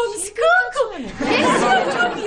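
A woman speaking, then about a second in a dense burst of several voices at once.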